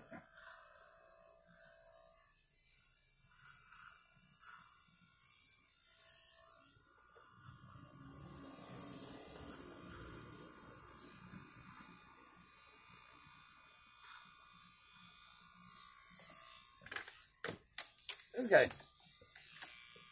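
Corded electric hair clippers running faintly while cutting hair, a little louder for a few seconds midway.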